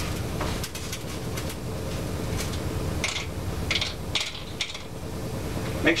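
Small carburetor screws and jets clinking as they are dropped into an outboard carburetor's float bowl: a dozen or so light, irregular clicks over a steady low hum.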